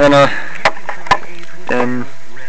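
A man's voice makes short hesitation sounds at the start and again near the end, with a few sharp clicks in between, over a steady background hum.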